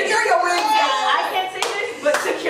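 Several women's voices talking at once, with hand clapping; one sharp clap stands out about one and a half seconds in.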